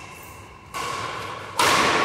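Two sharp badminton racket strikes on shuttlecocks, about a second in and near the end, the second louder, each ringing on in a large hall's echo.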